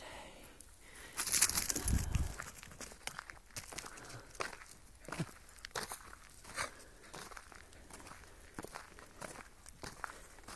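Footsteps crunching on a gravel track, irregular steps, with a louder burst of scuffing noise about a second in that lasts about a second.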